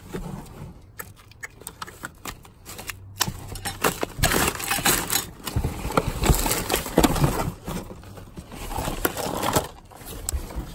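A gloved hand rummaging through a cardboard box of papers and small objects: paper and cardboard rustling, with many small clicks and knocks as items are moved. It is sparse at first and busiest in the middle.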